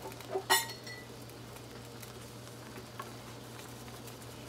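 A single sharp, ringing clink of a kitchen item, about half a second in, then a faint tick near the end over a low steady hum.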